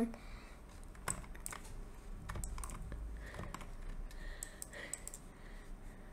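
Faint, irregular clicking and tapping on a computer keyboard, a scattering of separate sharp keystrokes.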